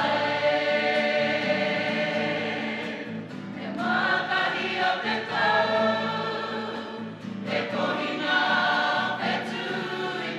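A group of mostly women's voices, with some men, singing a Māori waiata together. It goes in long held phrases, with short breaks about three and seven seconds in.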